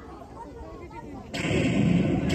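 Low background murmur, then about a second and a half in a sudden, loud explosion-like sound effect blasts from the show's loudspeakers and keeps going.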